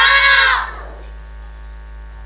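A child's loud, high shout on one arching pitch, cut off under a second in, then a steady low electrical hum from the sound system.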